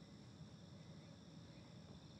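Near silence: faint night ambience with a steady, high chirring of crickets.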